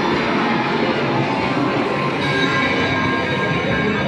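Steady din of a casino floor, with the electronic tones of slot machines running through it.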